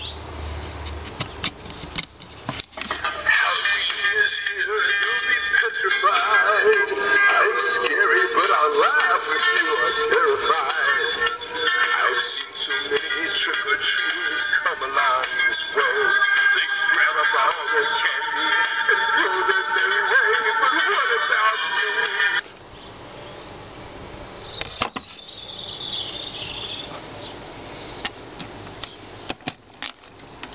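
Electronic sound module in a Halloween skull prop playing a spooky song with a synthetic singing voice. It starts about three seconds in, runs for about twenty seconds and cuts off suddenly.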